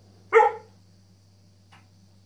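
Rough collie giving a single loud, sharp bark about a third of a second in, a bark meant to intimidate a cat into giving up its spot.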